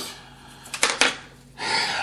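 Hobby knife and small plastic model part handled on a cutting mat: a few sharp clicks a little under a second in, then a short scratchy rub near the end.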